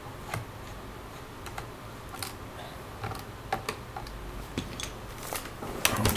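Scattered light clicks and ticks of a small screwdriver working a screw in a laptop's plastic underside, with busier, louder plastic knocks near the end as the laptop is lifted and tilted.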